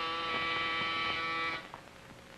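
An electric buzzer sounds once: a steady buzz about a second and a half long that cuts off sharply.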